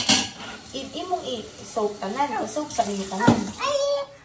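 Dishes clinking and clattering in a stainless steel sink with water splashing as they are washed, a sharp clatter at the start and another near the end. A child's voice chatters over it.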